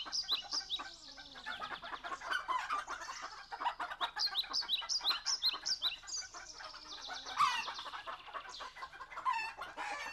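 Domestic chickens clucking continuously, with small birds giving quick, high chirps that fall in pitch and repeat.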